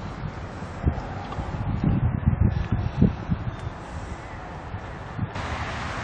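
Wind buffeting an outdoor camera microphone: a low, gusty rumble with a few dull bumps, strongest about two to three seconds in.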